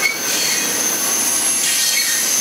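Double-stack intermodal container well cars rolling past at speed: a steady roar of wheels on rail with a thin, high, steady squeal from the wheels.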